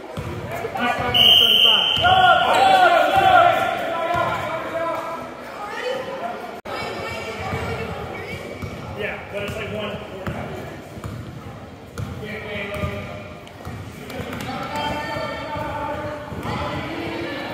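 Basketball bouncing on a hardwood gym floor during play, with shouts and voices echoing through the large hall. A short, shrill high tone sounds about a second in, at the loudest stretch of voices.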